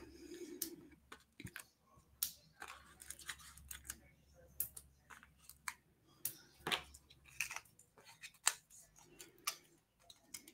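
Faint, scattered small clicks and rustles of handling: foam adhesive dimensionals being peeled off their plastic backing sheet and pressed onto a die-cut cardstock circle.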